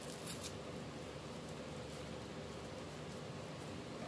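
A brief rustle a fraction of a second in, then steady low background hiss.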